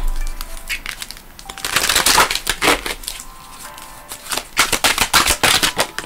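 A deck of oracle cards shuffled by hand: rapid flicking and slapping clicks as the cards slide and strike each other, in busy runs about two seconds in and again over the last second and a half. Faint background music with held tones runs underneath.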